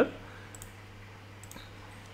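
A few faint computer mouse clicks over quiet room tone with a low steady hum.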